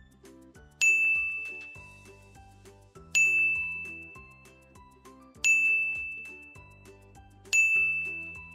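A bright chime-like ding, struck four times about every two seconds, each ringing out and fading, over soft background music. The dings pace each syllable in turn for the children to read aloud.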